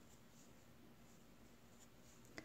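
Near silence, with a few faint, soft ticks and rustles from bamboo knitting needles working wool yarn.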